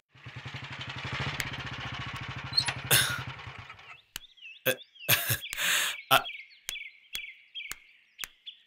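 Royal Enfield single-cylinder motorcycle engine idling with a rapid, even beat, switched off about four seconds in. Birds chirp and a few sharp clicks follow.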